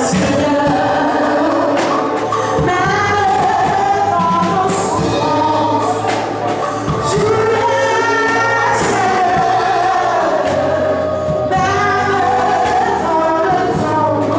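Amplified gospel praise singing: a woman leads into a microphone with other voices joining, over a live keyboard and a regular percussive beat.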